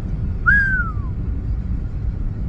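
A single short whistle, about half a second long, that rises briefly and then slides down in pitch, heard over the steady low road rumble inside a moving 2012 Honda Civic.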